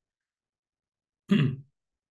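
Dead silence, then about a second and a half in a man briefly clears his throat once.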